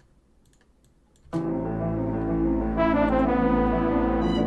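A work-in-progress trap beat playing back from FL Studio, starting suddenly about a second in after near silence with a few faint clicks: held orchestral string and piano chords over a deep bass, growing brighter near the end.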